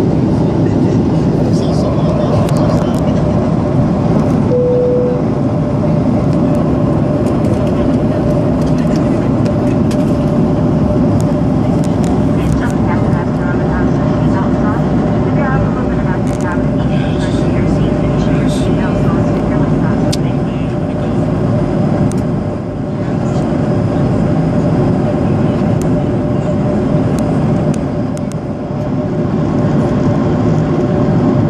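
Steady in-flight cabin drone of a Boeing 737 heard from a window seat over the wing: engine and airflow noise with a steady hum. A brief tone sounds about five seconds in.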